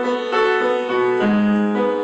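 Piano playing a slow accompaniment, notes struck about every half second and left to ring.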